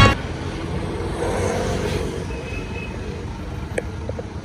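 Steady road traffic noise, a low rumble of passing vehicles, with a small click near the end.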